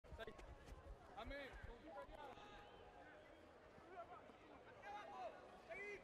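Faint shouts and calls from players on the pitch during a lineout and maul, with a few low rumbles in the first second.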